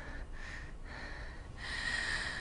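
A person breathing audibly through the nose: several soft breaths, then a longer, stronger one about a second and a half in.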